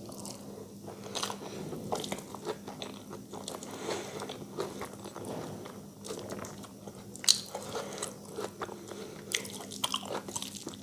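Close-up sounds of eating rice and curry by hand: irregular wet chewing, biting and lip smacks, with fingers squishing and mixing rice on a steel plate. A sharp click stands out about seven seconds in.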